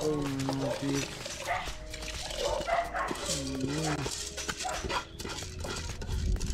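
A dog giving two drawn-out calls, one at the very start and one with a rising-then-falling pitch about three seconds in.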